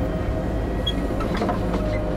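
Cable car carriage wheels rolling along the steel track cable: a steady rumble with a faint whine and a few scattered clicks.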